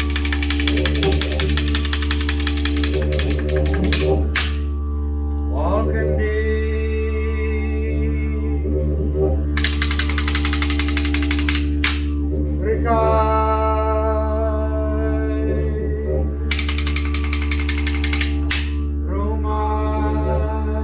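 Didgeridoo droning continuously, with three bursts of rapid wooden clicking from boomerangs clapped together, each lasting two to four seconds. Between the bursts, two long calls rise and then hold a steady note over the drone.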